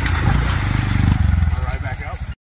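Honda Monkey's small single-cylinder four-stroke engine running under way, getting louder a little after a second in, with brief voice-like sounds near the end.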